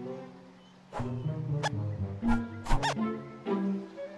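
Cartoon soundtrack: orchestral film score under short sound effects. A few sharp hits come after the first second, and a quick squeak rises and falls in pitch near the end.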